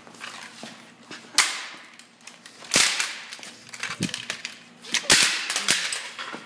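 Plastic-bodied Lancer Tactical M4A1 airsoft rifle being smashed to pieces: a series of loud, sharp cracking impacts a second or so apart, the last two close together.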